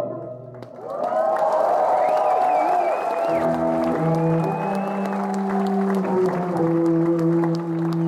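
Audience applauding and cheering after a held band chord cuts off at the start. From about three seconds in, long steady low notes from a bowed cello come in over the applause.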